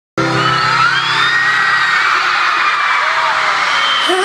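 Concert crowd screaming and whooping, many high voices at once, over music from the arena's sound system with a held low chord in the first half-second.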